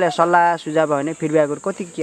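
A person speaking in Nepali, with a steady high-pitched hiss underneath.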